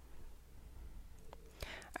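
Quiet room tone with a steady low hum and soft breathing, and a single light click of a computer keyboard key a little past the middle.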